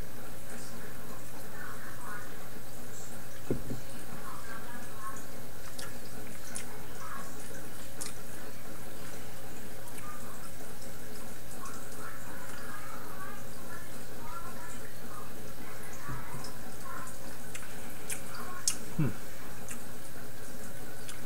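Aquarium filter water trickling and dripping over a steady background hum, with a couple of soft low knocks.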